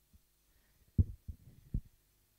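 Three dull, low thumps of clothing or hands bumping a clip-on lapel microphone as the wearer moves, the first about a second in and the loudest.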